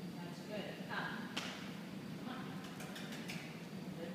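A woman's voice saying a few short, indistinct words, with a sharp click about a second and a half in and a few lighter clicks near the end.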